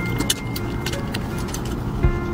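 Close-miked mouth sounds of sucking and eating marrow out of a cut beef marrow bone, with sharp wet clicks and smacks.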